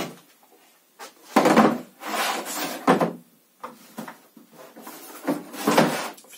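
Hard plastic power-tool carrying case being handled on a wooden workbench: a series of knocks and rattles as it is set down and its lid is opened, the loudest about a second and a half in and again near the end.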